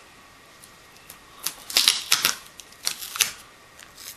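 Short bursts of sharp clicks and crackles as fiberglass strapping tape is cut with an X-Acto knife and handled on a wooden tabletop, in two clusters a second or so apart after a quiet start.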